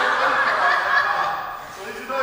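People laughing and chuckling, mixed with voices. It is loudest in the first half and fades toward the end.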